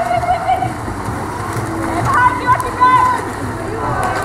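Spectators shouting from the poolside: one drawn-out call near the start and a few high-pitched yells about two to three seconds in, over steady crowd noise.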